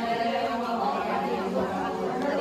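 Many voices at once, overlapping in a large hall.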